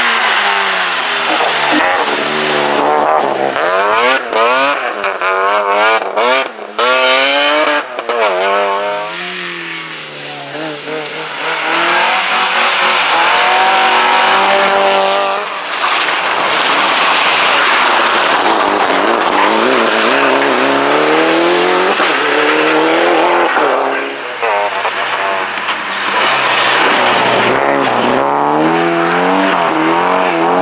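Rally cars, among them a BMW E36 3 Series, a Mitsubishi Lancer Evolution and an Opel Manta, passing one after another at full throttle. The engines rev hard, their pitch climbing and dropping repeatedly through gear changes and lifts off the throttle.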